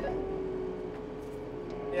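Kubota M4D-071 tractor's diesel engine running steadily as the tractor starts to back up, heard as an even drone with a steady hum.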